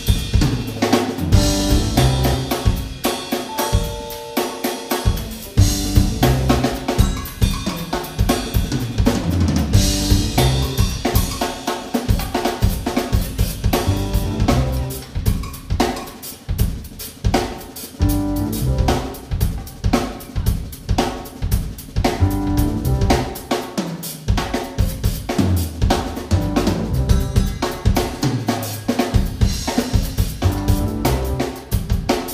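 A live band playing an instrumental groove: a drum kit with snare, bass drum and cymbals to the fore, over electric bass guitar and keyboards.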